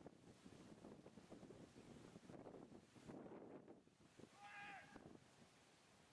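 Near silence: faint outdoor ambience with light wind on the microphone. About four and a half seconds in comes one brief, high-pitched call.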